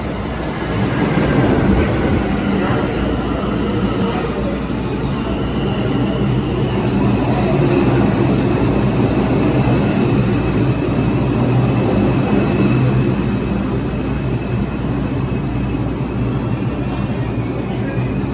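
R142 subway train pulling into a station: a loud, steady rumble of wheels on the rails that swells about a second in as the cars roll close past and slow down, with a faint high whine above it.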